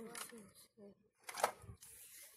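A faint voice trailing off, then one brief, sharp handling noise about one and a half seconds in as toys and packaging are moved about.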